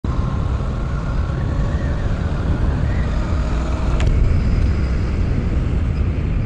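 Royal Enfield Super Meteor 650's parallel-twin engine running as the motorcycle is ridden on the road, heard under a steady low rumble of wind and road noise on the rider's camera. A single sharp click sounds about four seconds in.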